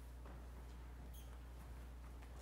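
Quiet room tone with a steady low hum, faint rustling and movement, and a brief high squeak about a second in.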